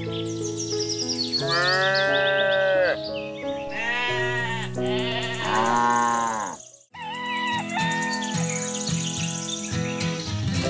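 Three drawn-out farm-animal calls, each rising then falling in pitch, over steady background music; the sound drops out briefly about seven seconds in.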